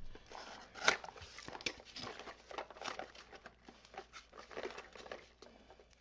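Rummaging through a box of small resin dye bottles: irregular clicks, rattles and rustles, the loudest about a second in.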